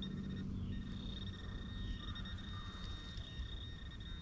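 Metal detector sounding a steady high-pitched tone, broken briefly just after the start, as it signals a buried metal target in the dig hole.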